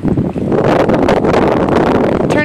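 Wind buffeting the microphone: a loud, steady rushing noise.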